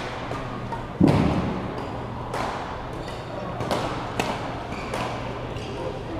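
Badminton rally in a large hall: rackets striking the shuttlecock with sharp cracks about once a second, each echoing briefly, and a louder heavy thump about a second in.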